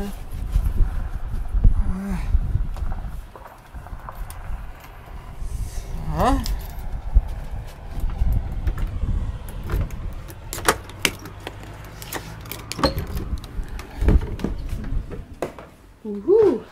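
Keys jangling and clicking in a door lock as a cabin door is unlocked and opened, with a run of sharp clicks through the second half. Wind rumbles on the microphone in the first few seconds.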